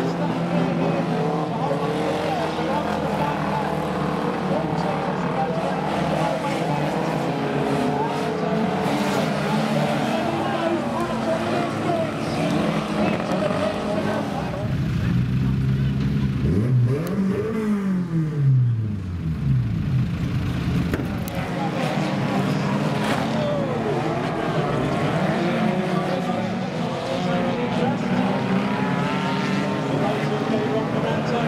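Several banger racing cars' engines running and revving together, their notes wandering up and down. About halfway through, one engine's note rises sharply and falls back, as it revs or passes close by.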